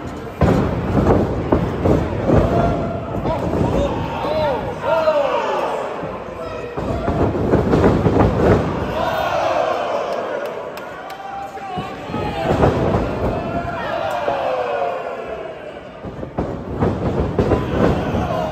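Repeated slams and thuds from wrestlers' blows and bodies hitting the ring, mixed with a crowd shouting and yelling in a large hall.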